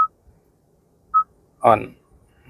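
Hyundai Stargazer infotainment touchscreen giving a short single-tone confirmation beep at each tap on the on-screen arrow: two beeps about a second apart.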